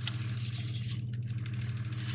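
A plastic toy lantern being handled and turned over in the hands, with a sharp click at the start and faint scraping. A steady low electrical hum runs underneath.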